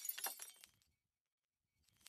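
Glass light bulb shattering: the fragments tinkle and fade out within the first second, followed by silence. Near the end a second burst of breaking-glass clatter begins and grows steadily louder, like a shatter played in reverse.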